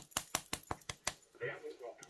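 A quick run of about eight light, sharp clicks in the first second, small hard objects being handled on a nail table, followed by a brief murmur of voice.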